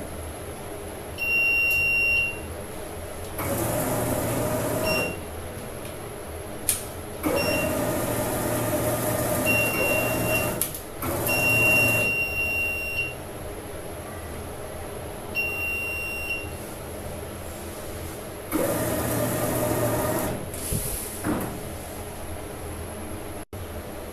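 A3 direct-to-garment flatbed printer's platen drive running in several bursts of a few seconds, the last one drawing the loaded platen into the printer. Short high electronic beeps sound between the runs, over a faint steady high whine.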